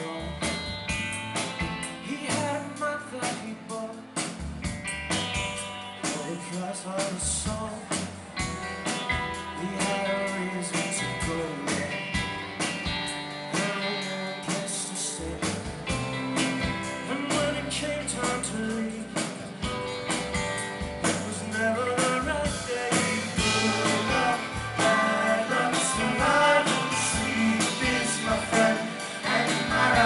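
Live indie rock band playing a song: drums, electric and acoustic guitars, bass and keyboards, growing louder about three quarters of the way through.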